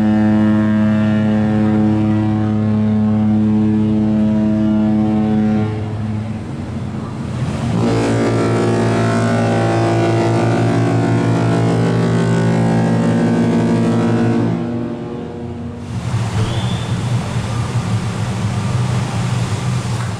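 Cruise ship horns sounding two long, deep blasts of about six and seven seconds, with a short gap between them; the second blast has a different mix of tones. A fainter, unsteady sound follows near the end.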